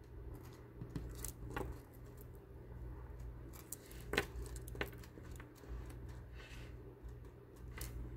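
Gold-tone chainmail jump rings of a flower bracelet clinking faintly as fingers shift and straighten it on a marble tabletop, with a few sharp clicks. The jump rings move around a lot and are hard to lay flat.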